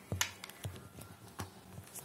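A few faint clicks and knocks of handling as a phone and its USB cable are plugged in at a desk.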